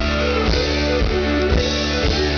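Live country band playing: guitars over a drum kit, with a steady beat of about two kicks a second.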